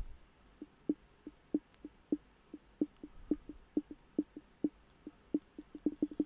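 Kodi menu navigation sounds: a run of short, soft ticks, about three to four a second, one for each step as the highlight scrolls through the add-on's menu list.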